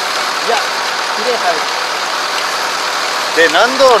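Kubota ARN460 combine harvester's diesel engine running steadily as the machine travels along the road. A voice speaks briefly now and then, and louder near the end.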